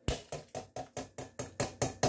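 An upturned tin can being tapped on its bottom by hand, about four knocks a second, to shake the last drained corn into the pot.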